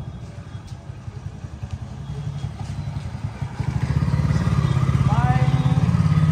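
Motorcycle engine running at low speed, a steady low putter that grows louder about halfway through.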